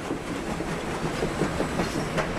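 A train running along the track, a steady rushing rumble of rolling wheels on rails.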